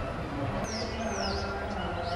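A bird chirping, two short high calls about a second in that each slide downward, over a steady low background rumble.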